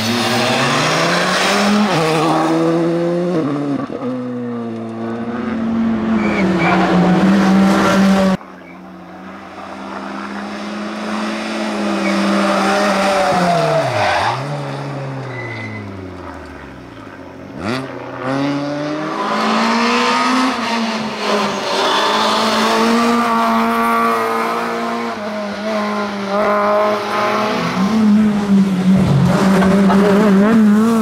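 Rally cars at racing speed on a tarmac stage, one after another, engines revving hard and falling in pitch through braking and downshifts, then rising again as they power out of corners. The sound breaks off abruptly about eight and eighteen seconds in as one car gives way to the next.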